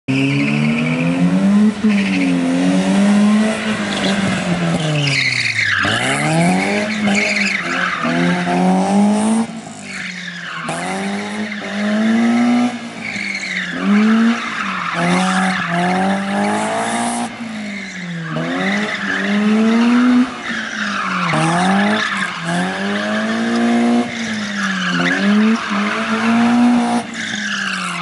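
Rally car engine revving hard and dropping back again and again as the car slides around cones, with tyre squeal from the sliding tyres.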